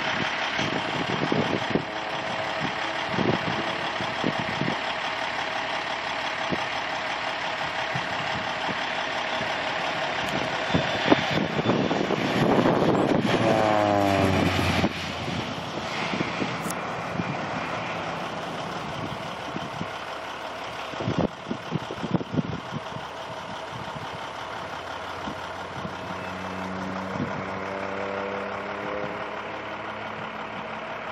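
Air Tractor AT-502 crop-duster's turboprop engine and propeller, heard as the plane makes low passes. About 12 seconds in it sweeps close by and its pitch drops steeply, then it cuts off sharply and fades as the plane pulls away. Near the end it comes round again, rising in pitch as it approaches.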